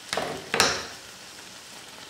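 A buñuelo de viento frying in hot oil: a faint steady sizzle, with two short sudden crackles in the first half second.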